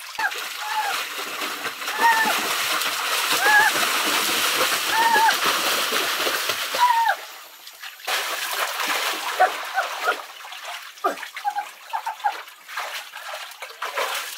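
Water splashing and churning as a person swims through a narrow, shallow concrete pool, loudest in the first seven seconds and then quieter and more broken up. Short high rising-and-falling cries sound over the splashing about once a second.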